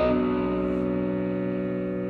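Distorted electric guitar (a Stratocaster through a Line 6 Helix) holding one sustained chord. It rings steadily and slowly fades: the feedback that opens the song.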